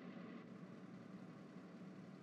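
Near silence: a faint, steady background hiss with nothing else heard.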